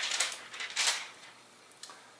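Two or three brief crinkling rustles of a thin plastic screen sticker being handled just after it is peeled off a laptop display, then a small click near the end.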